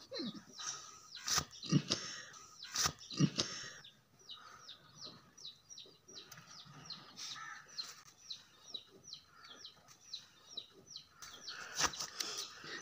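A bird cheeping: a long even series of short, high, falling chirps, about three a second, through the second half. Before it come a few sharp knocks and some rustling.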